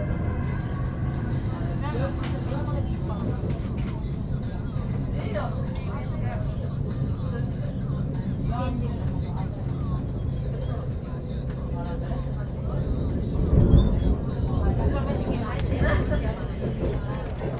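Commuter train running on the rails, heard from inside the carriage: a steady low running rumble with faint passenger chatter over it. The rumble swells louder about thirteen seconds in.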